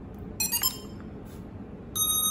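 ZLL SG907 Max drone beeping as it powers on after its power button is pressed: a quick run of short beeps about half a second in, then a long steady beep starting near the end.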